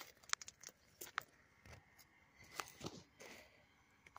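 Faint, irregular crunches and clicks of footsteps in dry grass and leaves, mixed with handling noise from the camera.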